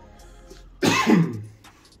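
A man clears his throat once, a short harsh burst about a second in, over faint background music.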